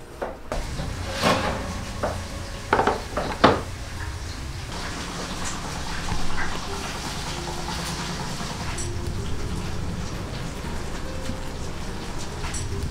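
Several sharp clinks and knocks of metal kitchenware being handled at a small electric oven, the loudest about three and a half seconds in, followed by a steady low hum.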